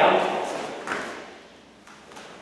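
A brief voice at the start, then a few light thuds and taps of bare feet on foam floor mats as a front kick is thrown and met with a low block.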